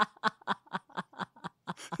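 Laughter in a run of short, quick bursts, about seven a second, that trails off about one and a half seconds in.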